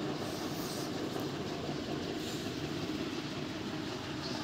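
Steady, even background noise with a faint low hum and no distinct events.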